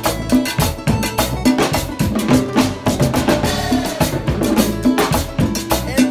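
Salsa percussion playing a fast, steady groove: drum kit, timbales, congas and metal hand percussion struck together in a dense rhythm.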